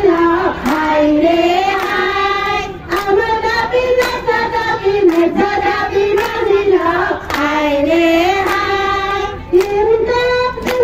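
A group of women singing together and clapping their hands in time, about two claps a second.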